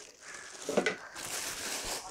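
Clear plastic bag crinkling and rustling as it is handled, most plainly in the second half, with a brief sound just before a second in.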